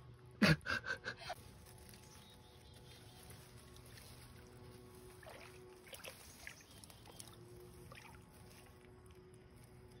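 Near silence: faint, steady outdoor background with a few very soft sounds in the middle.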